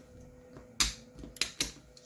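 One sharp click about a second in, then a few lighter clicks: black printed plastic idler parts knocked and fitted together in the hands.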